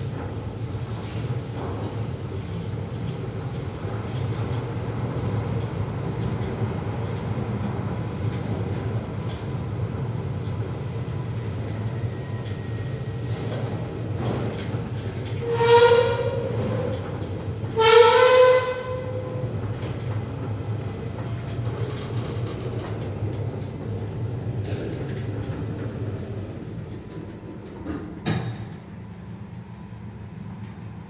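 Glass passenger lift running with a steady low hum as it travels. Partway through, a horn sounds twice, about two seconds apart, each blast about a second long and the loudest sounds here. Near the end there is a sharp click, and the hum drops after it.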